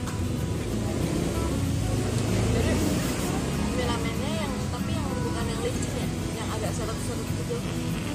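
Steady street traffic rumble, swelling as a vehicle passes about two to three seconds in, with faint background voices.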